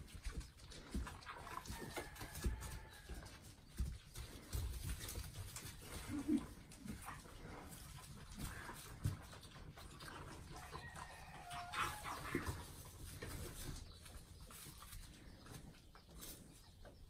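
Farm animals: a few short calls, one about two seconds in and another near twelve seconds, among scattered knocks and bumps of animals and handling.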